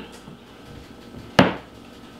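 A single sharp metallic clank of kitchenware about one and a half seconds in, with a brief ring: the metal sheet pan or utensil being handled on the counter as it goes toward the oven.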